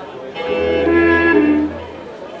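Didgeridoo drone and clarinet playing one short phrase together: a few held clarinet notes stepping downward over the low, steady drone. The phrase starts about half a second in and breaks off shortly before the end.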